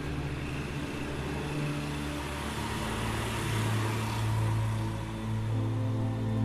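Background music with sustained low notes, over a rushing noise that swells and fades about four seconds in.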